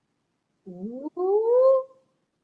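A woman's voice sliding upward in pitch, starting about two-thirds of a second in: a short rising sound, a brief break, then a longer one that climbs and levels off at the top.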